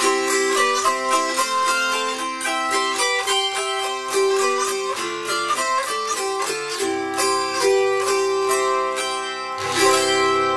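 Autoharp played solo: a quick picked melody of plucked notes ringing over sustained bass strings, ending on a loud strummed chord near the end that is left to ring.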